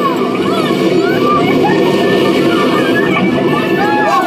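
Indistinct overlapping voices over a steady low hum, with no clear words.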